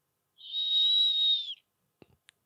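A recorded animal call played as a sound quiz: one high, steady whistle about a second long, dipping slightly in pitch at its end.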